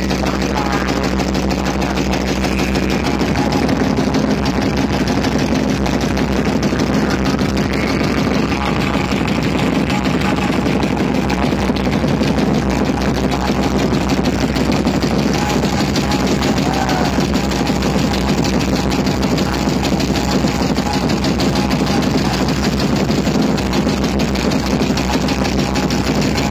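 Loud, bass-heavy DJ music blasting from truck-mounted sound-system speaker stacks, one steady wall of sound.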